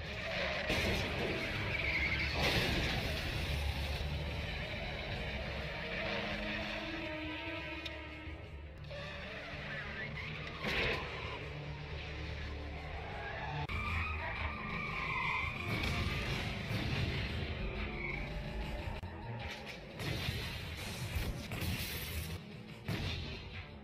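Film car-chase soundtrack: a car engine running hard and tyres skidding under a music score.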